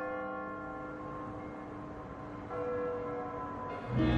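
A bell struck twice, about two and a half seconds apart, each stroke ringing on and slowly fading.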